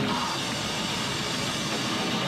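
Three-piece grindcore band playing live: distorted electric guitar, bass and drum kit in a loud, dense wall of sound.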